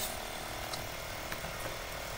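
Steady background hiss with a few faint computer mouse clicks, about two, as a colour swatch is picked.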